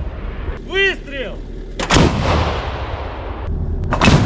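Gunfire and shell explosions: a heavy blast about halfway through and another at the very end, each followed by a rumbling tail. A short whistle that rises and falls is heard twice about a second in.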